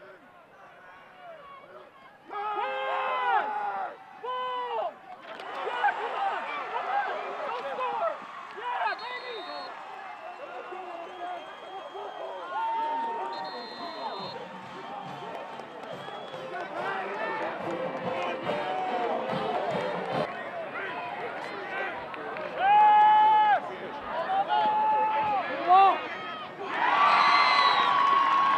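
Football crowd in the stands: many voices shouting and calling out together, with a few loud single shouts standing out, near the start and again about three-quarters of the way through. The crowd noise starts low and fills in after about five seconds.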